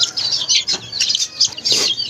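Many chicks peeping together, a dense, continuous run of short high-pitched chirps.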